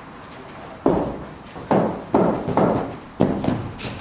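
Footsteps of a bowler's run-up on the artificial-turf floor of an echoing indoor cricket net hall: about five heavy thuds over three seconds as he runs in to deliver with a sidearm ball thrower.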